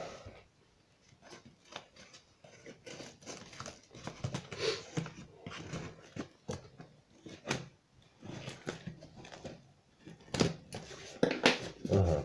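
Small scissors snipping and scraping through packing tape and corrugated cardboard, with the cardboard tearing and the tape crackling as a box flap is pulled open. Irregular snips and scrapes, with two louder sharp noises near the end.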